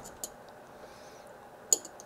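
Small metal clicks as an SMA torque wrench is fitted onto a board-mounted SMA connector's nut: a faint tick about a quarter second in, then one sharper click near the end.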